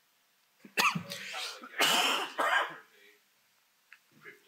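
A man coughing, a short fit of about three loud coughs starting about a second in, from being unwell with a cold.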